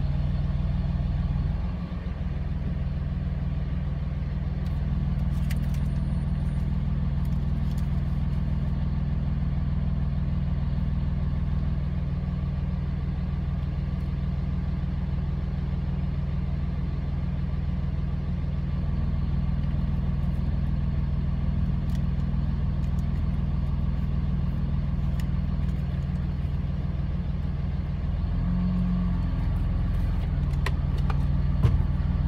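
A vehicle's engine idling steadily, heard from inside the cab, with a few faint ticks.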